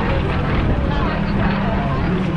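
Small aerobatic plane's engine droning steadily overhead as it flies a smoke-trailing loop, under a background of voices.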